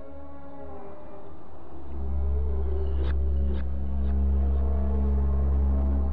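Dark ambient horror soundtrack: sustained droning tones, joined about two seconds in by a heavy low rumble that swells louder, with a few sharp clicks near the middle.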